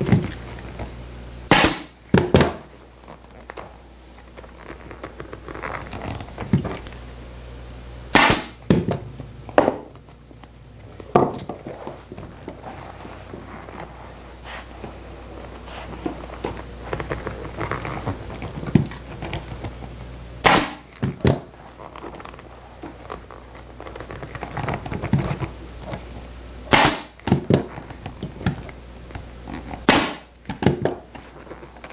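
Pneumatic upholstery staple gun firing staples through vinyl into a wooden bench board, with sharp shots singly or in quick pairs every few seconds. Between shots the vinyl cover is handled, over a steady low hum.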